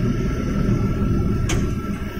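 Low steady rumble inside a van's cabin, from its engine idling, with a single sharp click about one and a half seconds in.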